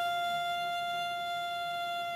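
Cello bowed high on the strings, holding one steady high note in imitation of a Formula 1 engine at speed.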